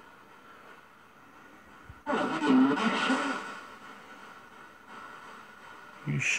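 Low hiss. About two seconds in, a garbled, unclear voice rises for about two seconds and then fades. The investigator takes it for a spirit response saying something about "you should".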